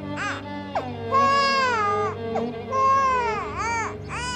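A baby crying in three wails, a short one and then two longer ones of about a second each, the last falling away. Background music with low sustained tones runs underneath.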